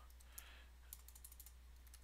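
Faint computer-keyboard keystrokes: a handful of scattered key taps over a low steady hum.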